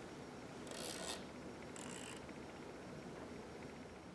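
Faint room tone with two short scraping rasps, about a second apart.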